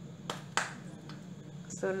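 Two sharp clicks about half a second in, then a few fainter taps, from a hand handling a plastic cooking-oil bottle, over a low steady hum.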